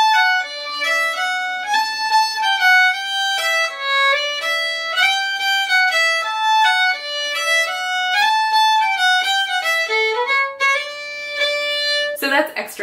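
Solo fiddle playing a lively Irish jig melody as a continuous run of quick single notes, with hammer-on grace notes thrown in: a quick second-finger grace note flicked just before the third-finger note.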